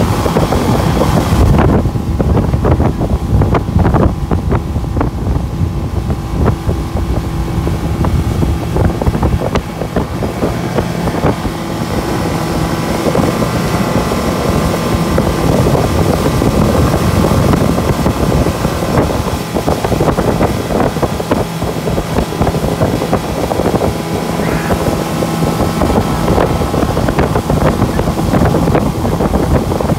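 Motorboat engine running steadily at towing speed, a continuous hum with several held tones, with wind buffeting the microphone.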